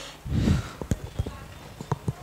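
Headset microphone being handled: a low thump about a quarter second in, then a run of light clicks and taps.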